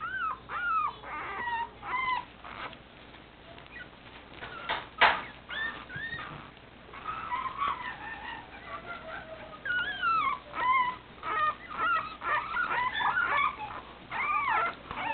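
Newborn Boston Terrier puppies squealing and whimpering: many short, high cries that rise and fall in pitch, coming in clusters with quieter gaps. A sharp knock about five seconds in.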